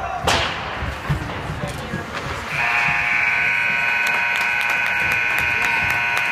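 Ice rink scoreboard horn sounding one steady buzz for about four seconds, starting about two and a half seconds in, signalling the end of the first period. Just before it, a single sharp crack of a hit on the ice.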